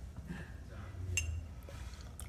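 A single light glass clink with a brief ringing, about a second in, as a glass olive-oil bottle with a pour spout is handled over the pan. It sits over a low steady hum.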